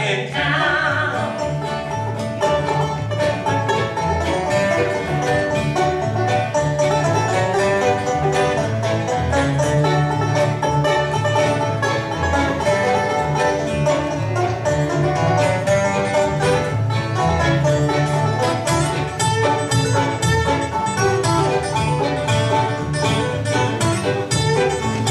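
Bluegrass band playing live: banjo, upright bass, acoustic guitar and fiddle together at a steady tempo.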